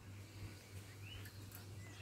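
Faint bird chirps, a couple of short rising calls in the middle, over a low steady hum.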